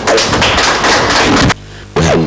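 Hand clapping from a small gathering, a dense patter of claps that cuts off abruptly about one and a half seconds in.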